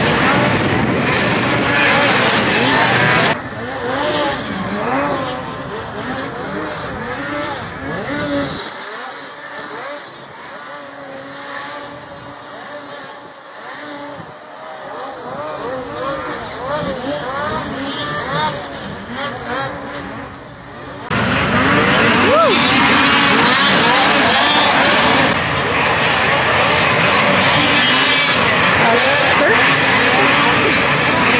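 Two-stroke snocross race snowmobiles running around the track, their engines revving up and down over and over. Louder at the start, more distant through the middle, and loud again from about two-thirds of the way through.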